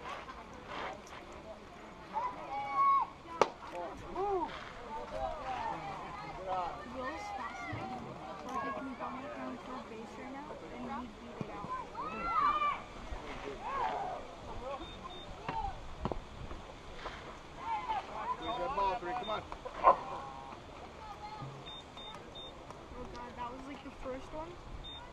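Indistinct chatter of spectators' voices, no words clear, broken by a few sharp knocks, one about three seconds in and another past the middle.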